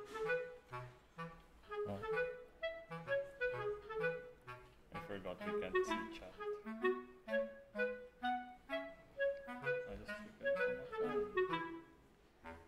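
Background music: a melody of quick, short notes over a line of lower bass notes.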